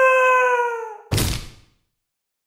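The animatronic show's soundtrack plays through the stage speakers: one long, held, voice-like note that sags slightly at its end. About a second in it is cut off by a short, loud crash-like burst, which fades within half a second into silence.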